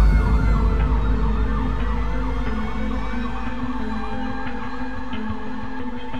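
Emergency vehicle siren in a fast yelp, its pitch rising and falling several times a second, over a low rumble that starts suddenly with the scene.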